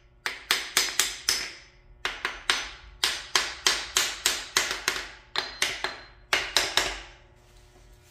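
Quick runs of sharp metal taps, about four a second with short pauses between: a bearing cap on a Ford 260 Windsor V8 being tapped loose from the block.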